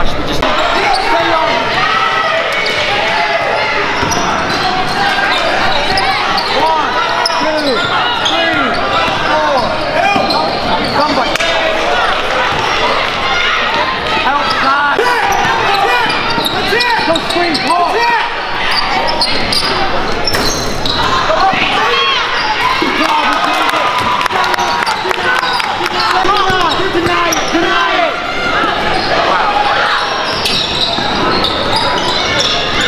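Many overlapping voices of spectators echoing through a gym during a basketball game. A basketball bounces on the hardwood court.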